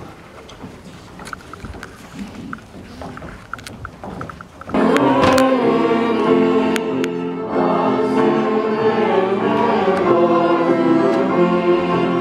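Low room rustle with a few small clicks, then about five seconds in a string ensemble of violins and a cello starts playing sustained, full chords and carries on.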